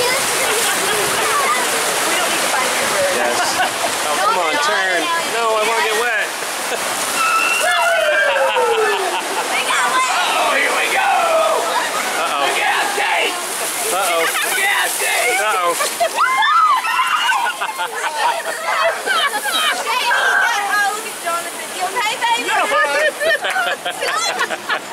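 Churning white water rushing and splashing around a river-rapids ride raft, a steady hiss throughout. Riders' voices call out over the water.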